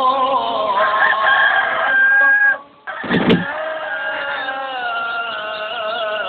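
Rooster crowing, one long held crow that breaks off about two and a half seconds in. A sharp falling swoop follows about three seconds in, then long held chanted notes begin.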